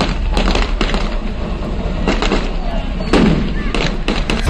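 Gunfire: a series of sharp shots at irregular intervals, some in quick pairs, with voices over a steady low rumble.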